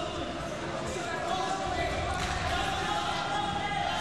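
Voices shouting over the noise of a fight arena, with dull thuds from fighters grappling and striking in a clinch against the cage.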